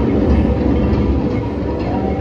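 A steady low rumble from the ride boat moving through its water channel, with the ride's music faintly underneath.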